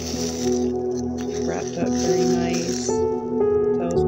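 Paper rustling and crinkling as a paper-wrapped salve stick is handled and unwrapped, lasting about three seconds. Underneath is soft ambient background music with sustained tones.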